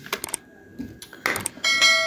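A few quick computer-keyboard key clicks, then about one and a half seconds in a bright electronic bell chime rings out and keeps ringing: the notification ding of a subscribe-button animation.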